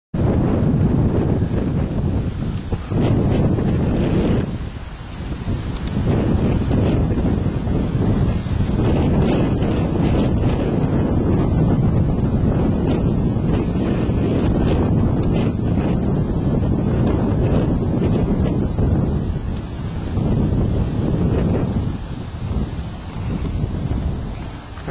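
Wind buffeting a handheld camcorder's microphone: a loud low rumble that gusts and eases, dropping away briefly about five seconds in.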